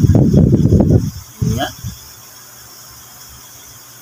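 About a second of loud, rough scraping and rubbing as a plastic cutting board and a spoon are handled over a ceramic bowl of raw fish pieces, while chopped onion, ginger and chili are tipped in; a short spoken word follows.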